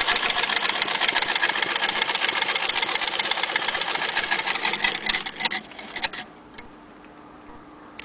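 Antique hand-crank Singer Model 28K vibrating-shuttle sewing machine stitching through a sheet of paper, a rapid steady clatter of the needle and shuttle mechanism. It stops after about six seconds.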